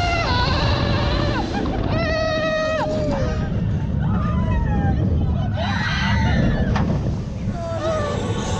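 Roller-coaster riders screaming and whooping in long held cries, several times, some falling away at the end, over the steady rumble of the ride and wind.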